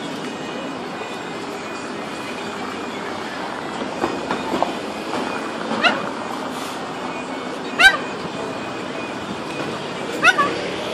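Blue-and-yellow macaw giving a few short, sharp calls, a faint one about four and a half seconds in, a clearer one about six seconds in and the loudest near eight seconds, over steady background noise.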